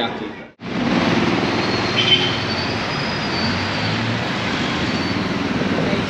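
Steady city street traffic noise, a continuous din of passing vehicles, starting abruptly about half a second in after a brief drop-out.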